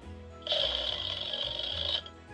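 A sustained, buzzy electronic sound effect over steady background music. It starts about half a second in and cuts off suddenly at the end.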